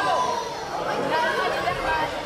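Many overlapping voices talking at once: chatter from the people around a kickboxing mat in a sports hall.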